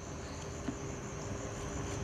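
Crickets chirping in a steady high trill over faint low background hum.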